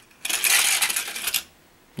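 Small toy car rolling down a plastic stunt track, rattling for about a second before it drops out beneath the track.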